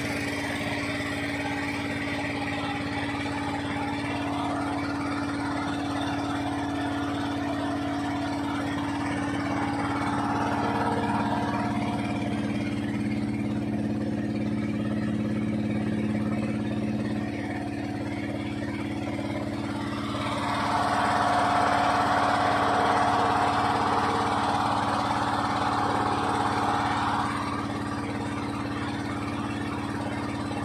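Small wooden tour boat's engine running steadily, with a steady low hum, getting louder and rougher for several seconds about two-thirds of the way through.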